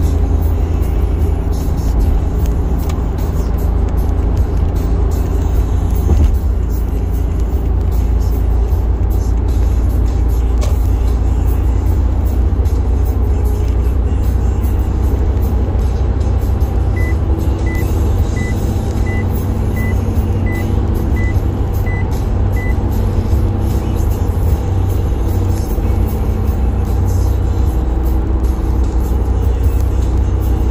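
Steady low road and engine rumble inside a moving car's cabin on a highway, with music playing along with it. A run of about nine short high beeps, evenly spaced, sounds about halfway through.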